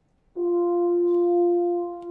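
Brass instruments of a horn and percussion quintet enter about a third of a second in on one long, steady held note.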